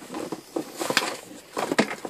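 Rustling and crinkling of plastic packaging and a coil of coax cable being pulled out of a cardboard box, with louder rustles about a second in and near the end.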